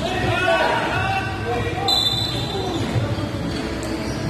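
Basketball game on a hardwood gym court: a ball bouncing and players' voices echoing in a large hall, with a brief high-pitched squeal about two seconds in.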